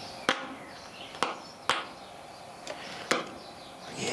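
Four sharp clicks over a steady low hiss as the wires and plugs between an MP3 player and a boombox's line-in hookup are handled and connected.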